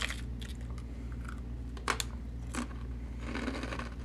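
Biting and crunching into a crisp, layered wafer cookie, with two sharp cracks a little past halfway and light crackles of its plastic wrapper around them. A low steady hum sits underneath.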